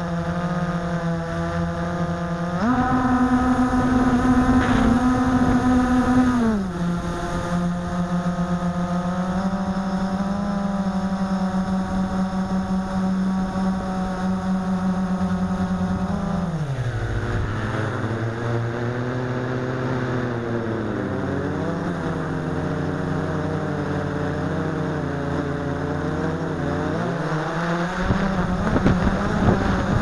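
Blade 350 QX quadcopter's four electric motors and propellers, recorded from a camera mounted on the airframe: a loud, steady buzzing whine with many overtones. The pitch jumps up about three seconds in, where it is loudest, eases down a few seconds later to a steady hover note, drops lower about halfway through and wavers, then rises again near the end as the motor speed changes.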